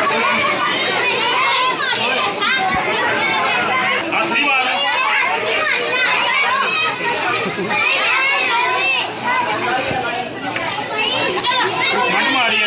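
Many children talking and calling out over one another, a steady noisy chatter of young voices.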